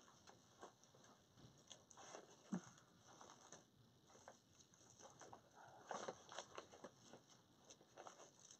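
Near silence, broken by a few faint rustles and light taps of deco mesh tubing being handled, one about two and a half seconds in and a short cluster around six seconds in.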